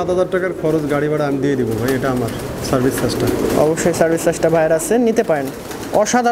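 Domestic pigeons cooing repeatedly in a cage, several birds overlapping.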